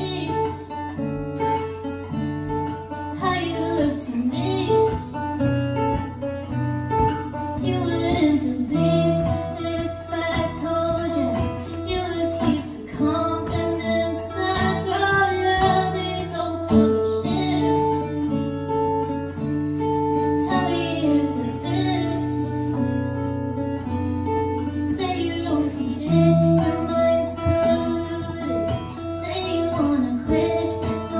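Live pop song played on a strummed acoustic guitar, with a woman singing over it.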